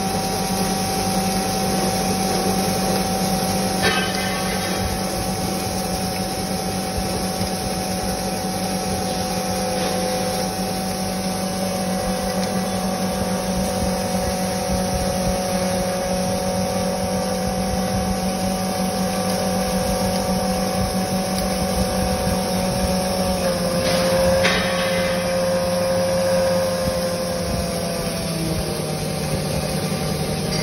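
Electric domestic flour mill (aata chakki) running steadily while grinding grain, a hum with a steady whine over it. Its pitch dips slightly about two-thirds of the way through and again near the end, with a couple of brief clicks.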